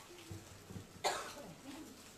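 A single sharp cough about a second in, over faint murmuring voices of people in a room.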